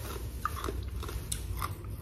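Ice cubes being crunched between the teeth in a mouthful, about five sharp crunches spread over a couple of seconds.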